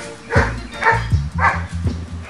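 Dogs barking about three times, roughly half a second apart, over background music with a heavy bass beat.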